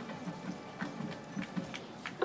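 Faint open-air ambience: a low, uneven murmur with scattered light clicks.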